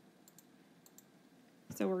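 A few faint, short clicks in a quiet pause, likely taps on a tablet screen, then a woman's voice starts near the end.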